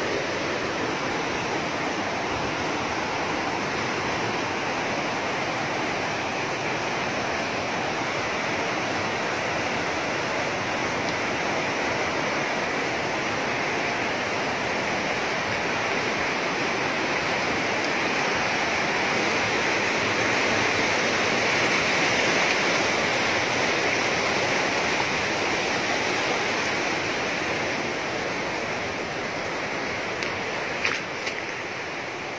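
Fast-flowing river rushing over rocks in steady rapids, swelling slightly a little past the middle.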